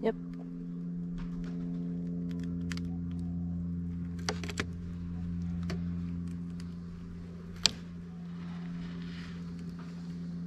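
A steady low hum with several even overtones, with a few sharp clicks and taps, the loudest about three-quarters of the way through.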